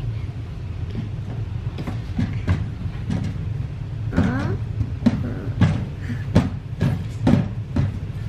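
Steady low hum with scattered soft clicks and rustles of small paper cards being handled on carpet, and a brief child's murmur about four seconds in.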